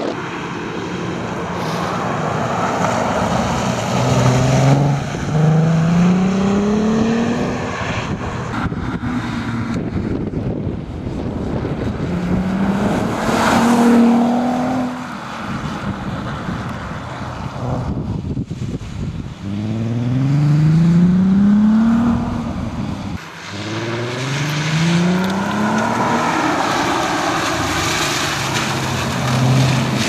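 Audi A3 hatchback's engine revving hard under acceleration. Its pitch climbs several times as it pulls through the gears, dropping briefly at each gear change.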